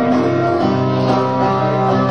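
Live music: an instrumental passage of guitar-led band playing between sung lines, with held chords.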